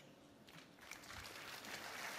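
Auditorium audience applause, faint at first and building from about a second in.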